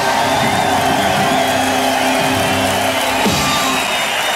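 A live rock band's closing notes ringing out over a cheering crowd, with a low note sliding steeply down about three seconds in.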